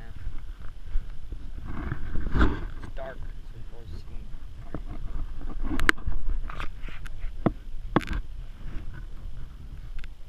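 Several sharp knocks and handling noises in a metal boat, the loudest about six and eight seconds in, over a low rumble of wind on the microphone. Some indistinct voice is mixed in.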